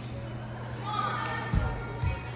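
Bare feet stepping on wooden balance beams: two dull thumps about half a second apart near the end, over a steady low hum.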